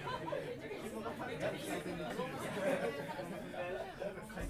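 Audience chatter: many indistinct voices talking over one another in a live venue, with no music playing.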